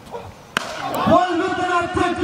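A single sharp crack of a cricket bat striking the ball about half a second in, followed at once by loud, long-held shouting voices.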